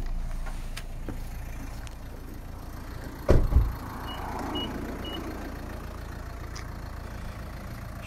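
A car door shutting with a heavy thump about three seconds in, followed by three short high beeps from the car about half a second apart, over a steady low rumble.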